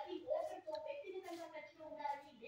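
A person talking steadily throughout: speech only, which the recogniser did not write down.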